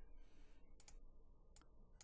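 A few faint computer mouse clicks: a quick pair a little before one second in, then a single click, over near silence.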